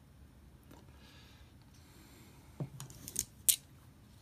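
Quiet room tone, then a few short clicks and scrapes of game cards and paper being handled on a tabletop about two and a half seconds in, the last click the sharpest.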